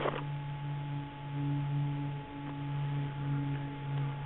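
A steady low hum with a fainter tone an octave above it and a thin higher whine, wavering a little in loudness.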